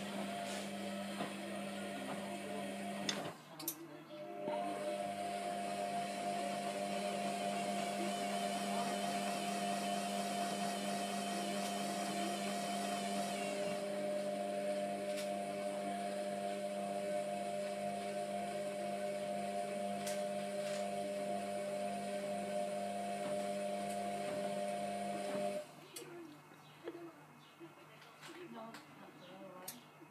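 Hotpoint Aquarius WMF720 washing machine in its wash phase: the drum motor runs with a steady hum while the wet, sudsy load tumbles. The motor stops briefly about three seconds in and starts again a second later. It stops near the end.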